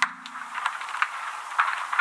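Crackling, rustling hiss with small scattered ticks, a sound effect under an animated logo outro. It starts with a click, and a lingering low tone from the preceding music fades out in the first half second.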